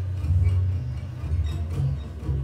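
Amplified steel-string acoustic guitar strummed live, with sustained low notes that shift every half second or so and no singing.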